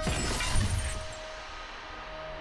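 A sudden crash with glass shattering, a staged car-collision sound effect, dying away over about a second into soft string music.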